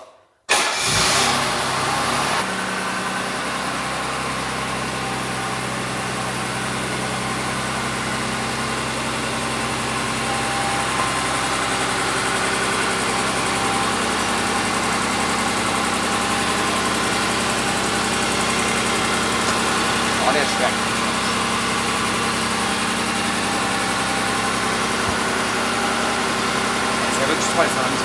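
Mercedes-Benz W116 280S's carburetted 2.8-litre twin-cam straight-six starts up about half a second in, runs high for a couple of seconds, then settles into a steady, even idle.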